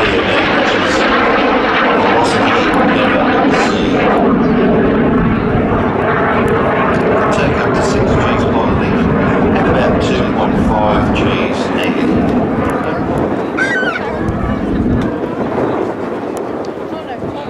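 BAC Jet Provost T.3A's Rolls-Royce Viper Mk 102 turbojet, loud and steady as the jet flies its display, easing off slightly in the last couple of seconds.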